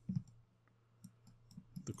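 Faint clicks of a computer mouse used to draw, a few light clicks from about a second in. There is a soft low thump near the start.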